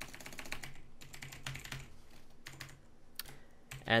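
Typing on a computer keyboard: a run of quick key clicks, dense at first and thinning out toward the end.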